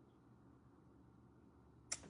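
Near silence with a faint low room hum, broken just before the end by a single short, sharp click.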